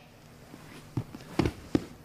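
Grapplers shifting on a foam mat: gi fabric scuffing and a few soft thumps of a knee and body moving on the mat, three short knocks in the second half.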